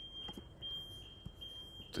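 A faint, steady high-pitched whine with a few brief breaks, and a couple of soft clicks.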